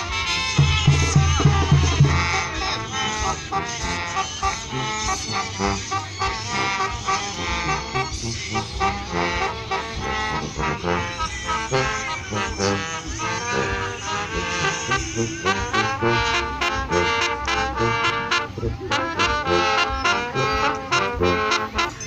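Brass band music with trumpets and trombones, a deep bass note sounding near the start and sharp percussion strikes coming in over the second half.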